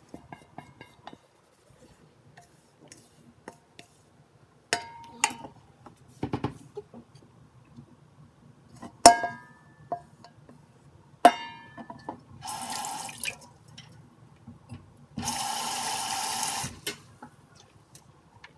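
Kitchen tap run into a stainless steel sink in two short bursts near the end, the second about a second and a half long. Before them come several sharp clinks and knocks of kitchen utensils, a few with a brief metallic ring.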